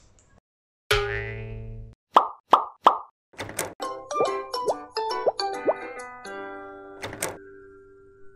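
Short, playful channel intro jingle: a held chord, three quick plops, then a bouncy run of notes with sliding pitches that ends on a held chord.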